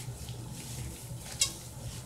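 Faint squishing and rubbing of rubber-gloved hands working wet, dye-soaked hair, with one short sharp sound about one and a half seconds in, over a low steady hum.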